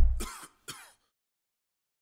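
The closing notes of an electronic logo jingle: a deep bass note dies away, then two short falling swishes come about a fifth of a second apart, all over within the first second.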